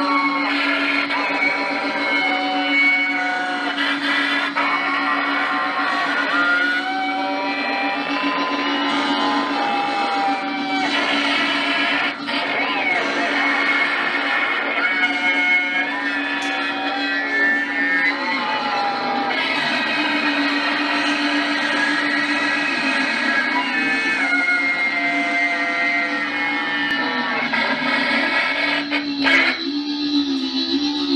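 Live noise-music performance played through a handheld megaphone: a dense, continuous wash of distorted sound with wavering, sliding electronic tones. A steady low drone runs underneath and drops out about two-thirds of the way through.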